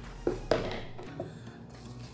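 A plastic cup knocking sharply twice against a plastic tub of dry coco-fiber and potting-soil substrate as it is scooped, followed by softer handling noise.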